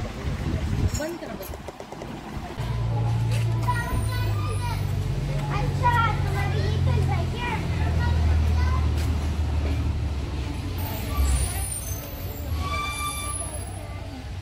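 A motor vehicle's engine running close by, its low drone shifting up and down in pitch for several seconds, with people talking over it.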